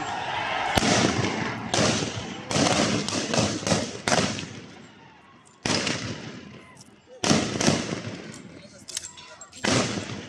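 A string of about a dozen sharp shots fired by police at a street protest. They come at uneven intervals: a quick run in the first four seconds, then single shots after short lulls, each ringing off briefly.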